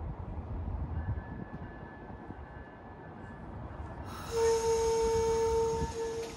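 Amtrak train at the platform: a low rumble, then about four seconds in a sudden loud hiss of air together with a steady single-pitched tone that holds for about a second and a half and then fades.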